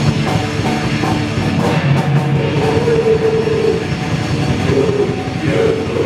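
Live raw punk / d-beat from a two-piece band: heavily distorted electric guitar over a drum kit, played loud, with long held guitar notes in the middle of the stretch and again near the end.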